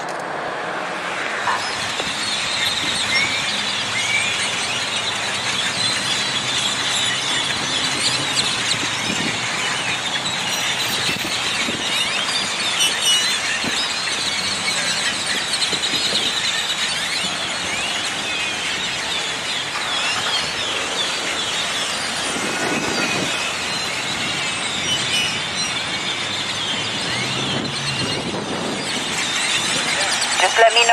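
A dense, steady chorus of many short high-pitched squeaks and chirps over a background hiss, going on without a break.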